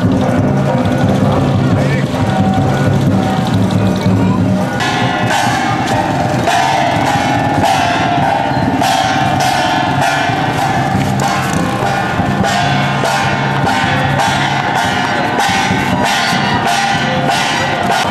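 Procession percussion: bright metallic strikes, like cymbals or bells, in a steady beat about twice a second over a held ringing tone. The beat starts about five seconds in; before that there is a low steady hum with voices.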